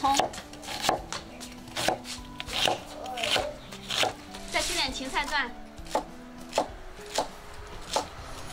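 Chinese cleaver slicing red onion on a round wooden chopping board: a steady series of sharp knocks of the blade on the wood, about three every two seconds.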